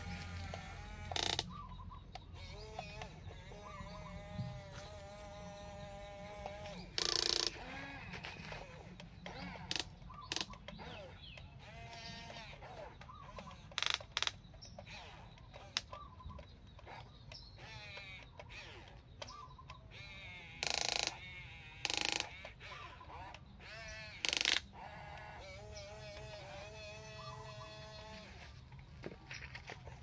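Livestock bleating repeatedly in the background, long wavering calls. About seven short, loud bursts of the toy excavator's electric motors and gears cut in as its boom and cab move.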